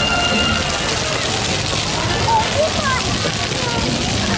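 Splash-pad fountain jets spraying up from the ground and water pattering onto the wet pavement: a steady hiss, with voices of people and children faint behind it.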